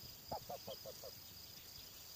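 White domestic duck giving a quick run of five short quacks, lasting under a second.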